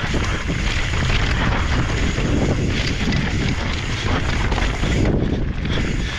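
Wind rushing over the microphone and a mountain bike's tyres rolling over dry dirt and loose rock at speed, a steady loud rumble.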